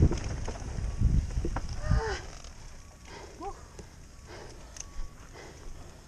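A mountain bike on a dirt trail, its tyres rumbling with wind on the helmet microphone, then fading as the bike slows to a stop. About two and three and a half seconds in come two short calls, each falling in pitch.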